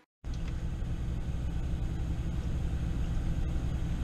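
Car engine idling, heard from inside the cabin as a steady low rumble that starts just after a brief silence at the beginning.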